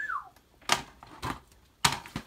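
Plastic DVD cases clacking as they are handled and set down: three sharp clicks, the last and loudest near the end.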